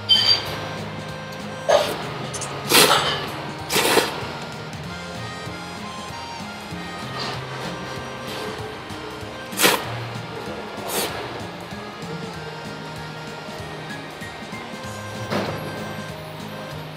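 A person slurping thick ramen noodles in short, loud slurps: four in the first four seconds, two more around the middle and one near the end, over background music.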